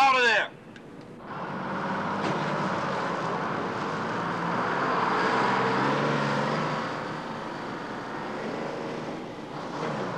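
A bus engine running as the bus drives across a lot. It builds to its loudest around the middle, eases off, then picks up again near the end.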